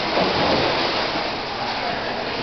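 Water rushing and splashing as waves surge through an aquarium wave tank, a steady wash of noise.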